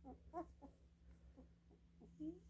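Very young labradoodle puppy squeaking faintly while being held, a run of short, high little whimpers a few times a second: the puppy is unsettled and wants to be put back down.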